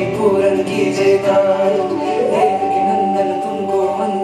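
Hindi devotional song to Krishna (a bhajan), sung over music. About halfway through, a voice slides up into a long held note.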